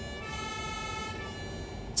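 Ambulance siren holding a steady tone over a low rumble.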